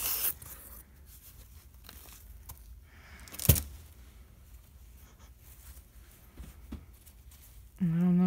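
Packaging and cloth bag rustling as the knotted snake bag is lifted out of a styrofoam-lined box, then quiet handling with one sharp knock about three and a half seconds in.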